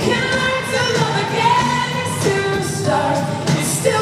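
Live pop ballad: a voice singing long held notes over band accompaniment, recorded from the audience in an arena.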